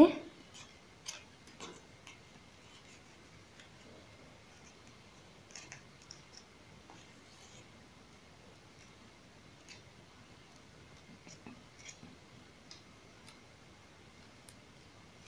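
Faint, scattered clicks and rustles of plastic wire strands being pulled, bent and tucked by hand while weaving a knot.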